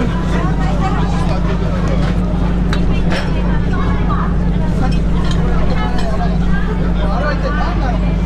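Background chatter of many voices over a steady low hum, with scattered short clicks.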